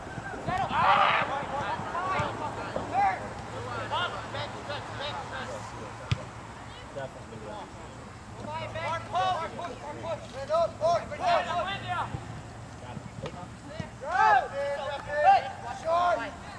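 Players' voices shouting and calling out across the field during a soccer game, in short scattered calls, with a single sharp knock about six seconds in.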